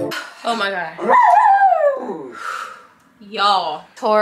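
A dog whining: a high cry that rises and then falls over about two seconds. A short breathy exhale and a brief low vocal sound follow near the end.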